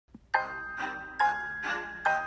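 Background music: a melody of bell-like struck notes, about two a second, each ringing on after it is struck.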